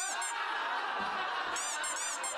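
A steady hissing sound effect with short runs of quick, high twinkling chirps over it, once at the start and again in the second half.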